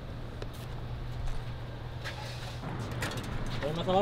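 A steady low hum with a few faint clicks, and a man's voice starting near the end.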